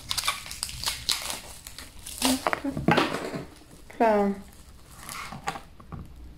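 Crinkling and rustling of the plastic and paper wrapping being pulled off a small plexiglass part of an ant-farm kit, in short irregular crackles. A brief vocal sound comes about four seconds in.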